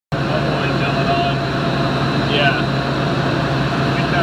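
Wind tunnel running: a steady rush of air with a constant low hum underneath.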